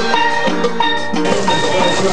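Steel band playing: a quick run of struck steelpan notes.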